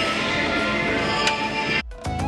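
Acrylic musical nativity set playing its electronic Christmas melody after being switched on; the tune stops abruptly near the end.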